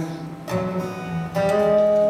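Acoustic guitar strummed between sung lines, with a new chord about half a second in and another just under a second later, each left to ring on.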